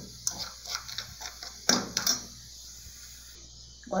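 A metal spoon stirring and scraping crystal sugar in a metal saucepan, with a few sharp clinks of spoon on pan in the first half and a quieter stretch after. The sugar is just beginning to melt into caramel over low heat.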